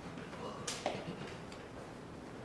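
Quiet hall ambience with a low murmur of voices and a single sharp click about a second in.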